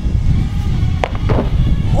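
Low rumble of wind buffeting the camera's microphone, with two sharp clicks about a second in.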